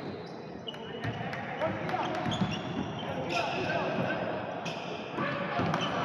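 Basketball being played on a wooden indoor court: sneakers squeaking in short chirps on the floor and the ball bouncing, under indistinct voices in an echoing gym.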